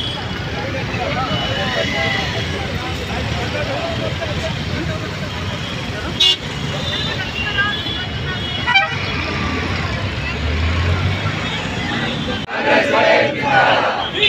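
Street ambience of a roadside crowd: people talking over steady traffic, with vehicle horns tooting. Voices grow louder and choppier near the end.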